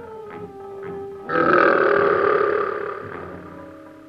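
A monster's roar sound effect that starts suddenly about a second in and fades away over about two seconds. Underneath it, eerie background music plays, with held tones and light taps about twice a second.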